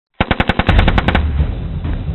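A machine-gun burst: about a dozen sharp shots at roughly ten a second, starting abruptly and lasting about a second, followed by a low rumbling tail.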